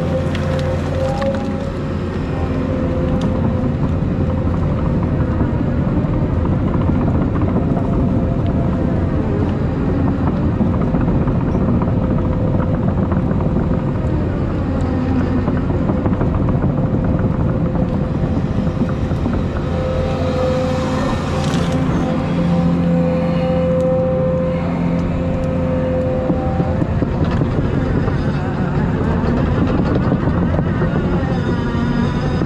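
Volvo EC220E excavator's diesel engine running under load from inside the cab, its hum swelling and easing as the hydraulics work the bucket and thumb. Brush and branches crackle as they are pushed.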